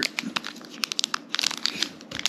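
Foil-wrapped trading card pack crinkling as it is handled, a quick run of sharp crackles.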